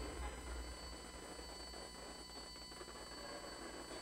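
The last of the music dying away within the first second, leaving a faint low hum and background noise.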